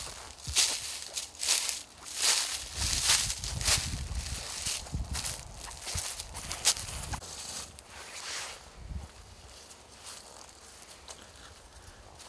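Footsteps on dry leaf litter and grass, an irregular run of rustling steps that grows faint after about eight seconds.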